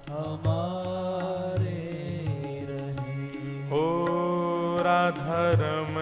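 Devotional bhajan music: a long-held melodic line that slides into its notes, over a steady low drone, with tabla strokes. A new held note enters about two thirds of the way in.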